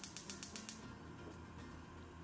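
Gas hob's spark igniter clicking rapidly, about eight clicks a second, while the burner knob is held in. The clicking stops less than a second in, with the burner already alight.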